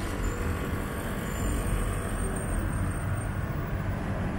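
Steady city street noise, mostly a low traffic rumble, with no single event standing out.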